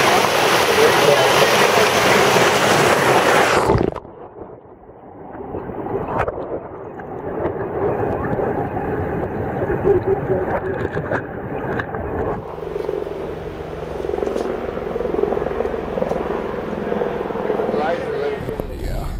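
A small mountain creek cascading between boulders, a steady rushing splash that cuts off abruptly about four seconds in. After that comes a quieter, muffled rumble with no high end.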